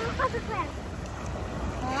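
Small waves washing onto a sandy shore, with wind rumbling on the microphone. A short bit of voice comes in the first half second and again just before the end.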